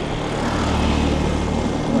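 Motor scooter being ridden at a steady speed: a steady low engine drone with wind and road noise.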